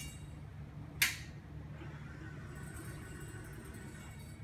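A single sharp click about a second in, over a steady low hum.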